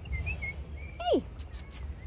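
Faint, short, high chirping notes of a small bird, several in a row, over a low rumble; a woman's short sharp call cuts in about halfway.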